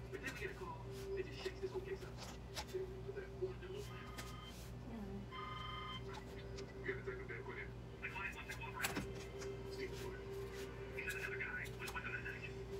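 A television playing in the background: faint, muffled voices and snatches of music over a steady hum, with scattered short, sharp clicks throughout.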